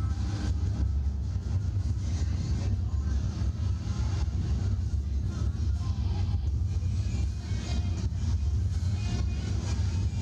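Wind rushing over the onboard camera microphone of a slingshot ride capsule in flight: a steady low rumble that eases slightly about three quarters of the way through.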